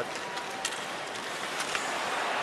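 Ice hockey arena sound during live play: a steady crowd hum with skate scrapes on the ice and a couple of faint sharp clacks of sticks on the puck.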